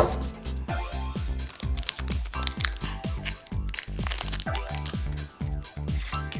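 Background music with a steady beat, over the crinkling of a Pokémon booster pack's foil wrapper and cards being handled.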